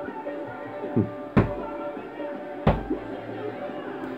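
Two sharp thuds of blows landing on a heavy punching bag, about a second and a half in and again a little over a second later, over background music.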